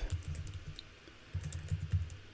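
Computer keyboard being typed on: a run of key clicks, a short lull around the middle, then another quick run of keystrokes.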